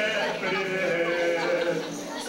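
A voice holding long, wavering notes as part of a live music performance.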